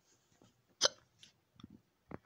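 A person hiccups once, a short sharp catch of breath a little under a second in, followed by a few fainter small noises.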